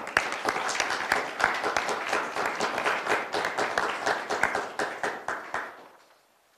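A small group of people applauding, with many hands clapping together; the applause thins out and dies away near the end.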